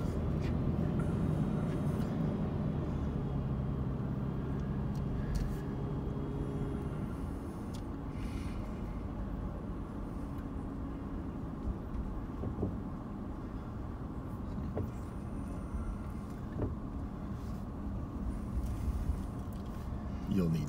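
A car heard from inside the cabin while driving on a highway: steady engine and road noise, a little quieter from about seven seconds in.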